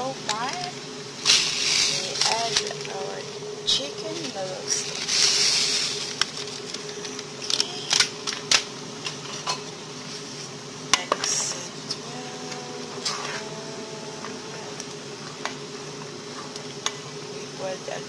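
Thick lentil soup simmering in a pot on low heat, its bubbles popping in irregular soft clicks, with brief hissing spells about a second in and again around five seconds. A steady low hum runs underneath.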